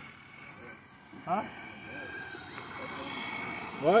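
Axial SCX6 Honcho RC rock crawler driving slowly: a faint, thin whine from its electric motor and gears that rises a little in pitch over the second half.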